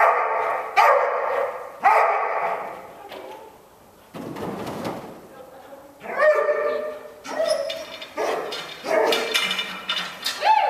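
A dog barking repeatedly: a run of barks in the first two seconds, a lull in the middle, then more barks from about six seconds on.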